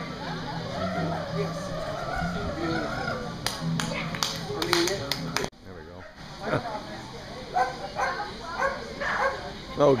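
Australian Shepherd barking during an agility run: a string of short, separate barks in the second half, echoing in a large hall.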